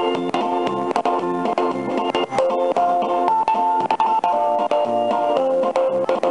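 Ride music playing from a coin-operated Cogan Hello Kitty Fun House ferris wheel kiddie ride: a looping tune of held melody notes over a steady beat.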